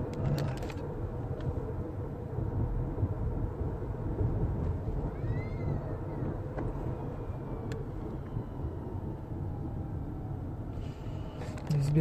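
Steady low road and engine rumble heard from inside a moving car's cabin. A faint, brief high chirp that rises and falls comes through about halfway.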